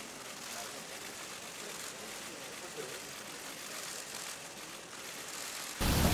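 Outdoor street ambience around a gathered press crowd: a steady hiss with faint, indistinct voices now and then. Shortly before the end the sound cuts abruptly to a much louder, dense din.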